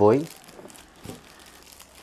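Plastic wrapping around a stack of books crinkling faintly as they are handled, with a few light ticks, after a short spoken word at the start.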